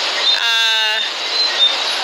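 Ocean surf rushing steadily, with short high chirps repeating every fraction of a second. A brief steady pitched tone, about half a second long, sounds half a second in.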